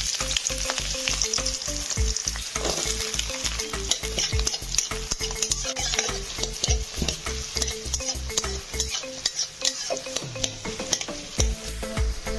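Chopped chillies, garlic and onion frying in hot oil in a steel pan: a loud, steady sizzle that starts suddenly, with a metal spatula stirring and scraping against the pan.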